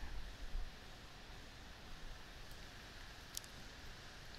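Quiet room tone: a steady faint hiss, with two faint clicks about two and a half and three and a half seconds in.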